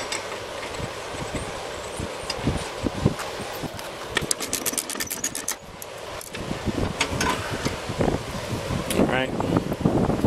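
Socket ratchet clicking rapidly, about nine clicks a second for just over a second midway, as a mower blade bolt is run into a new deck spindle; a few single clicks and knocks of the tool follow.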